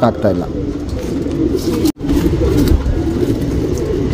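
Domestic pigeons cooing in the background over a low rumble; the sound breaks off for an instant about two seconds in.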